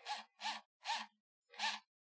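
A man's short breaths, four quick breathy puffs in under two seconds.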